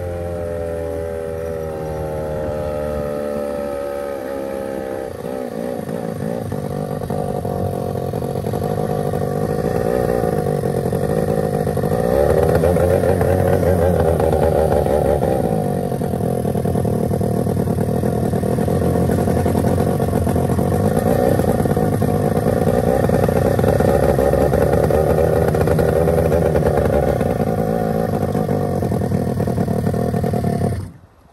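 Kawasaki 550cc two-stroke boat engine running under way at speed, heard close up from on board. Its pitch eases down slightly over the first few seconds, then it runs hard and steady, growing louder, with a brief dip about halfway through.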